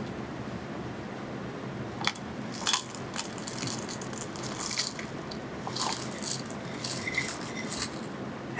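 Small hard colour chips poured from a small steel cup into a plastic mixing cup: a dry, irregular crisp crackle and patter of chips tumbling in, starting about two seconds in.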